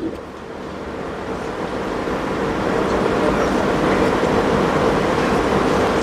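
Steady background noise with a faint low hum, swelling gradually louder over several seconds, like passing road traffic.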